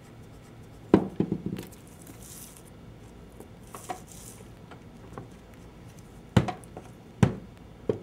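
Dull knocks and taps of shells, coral and stones being handled, set down and pressed into a soft clay slab on a cloth-covered work table, with a couple of faint scrapes between them. There is a cluster of knocks about a second in, then three more single knocks near the end.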